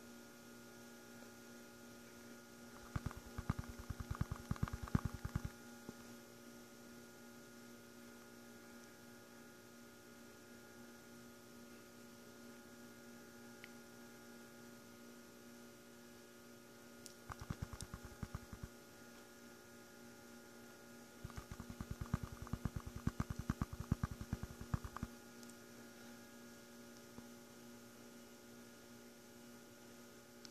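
Steady electrical hum, with three spells of rapid rattling and swishing as a plastic gold pan holding water and black sand concentrate is shaken by hand. The first spell comes a few seconds in, the second about halfway, and the longest, about four seconds, shortly after.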